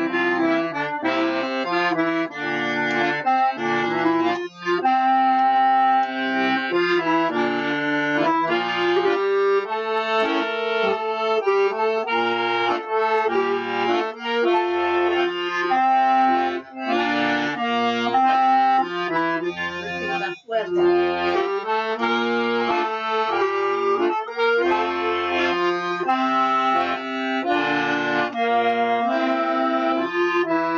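Piano accordion playing a slow Hanukkah melody with changing bass notes, joined by a clarinet, as a duet. There are a couple of brief breaks between phrases.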